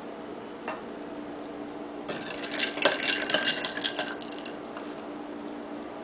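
A metal table knife clattering and clinking against a hard countertop and glassware in a quick flurry of clicks lasting about two seconds, over a steady low hum.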